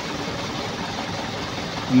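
Truck engines idling in a queue: a steady, even rumble with no distinct events.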